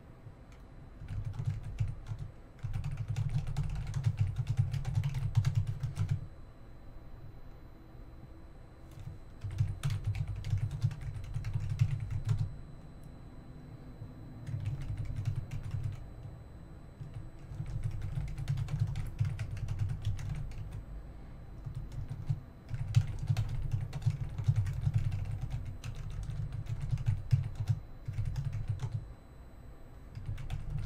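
Typing on a computer keyboard in bursts of a few seconds, with short pauses between them.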